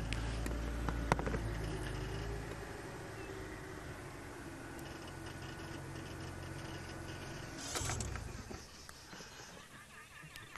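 Game-drive vehicle's engine running at low speed, its note easing down over the first few seconds. A brief rush of noise comes near the end, after which the engine is quieter.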